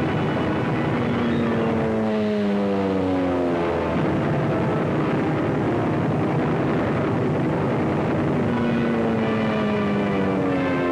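Steady roar of aircraft engines, the pitch falling twice, about a second in and again near the end, as a plane passes.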